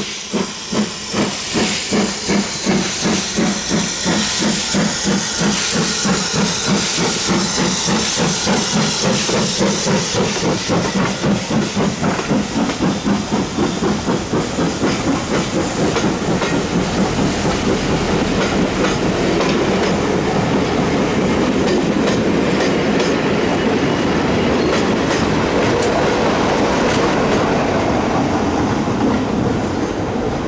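Steam tank locomotive passing close by under power, its exhaust beats coming about two to three a second with a steam hiss. From about halfway the beats give way to the steady rumble and clickety-clack of its coaches rolling past.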